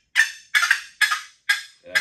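Wooden turkey box call clucking: the lid is tapped lightly against the box's edge, giving a run of short, sharp clucks about two a second.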